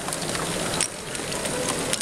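LEGO Great Ball Contraption modules running: Technic motors and gear trains give a steady mechanical whirr, with scattered sharp clicks of small plastic balls and parts clattering through the mechanisms.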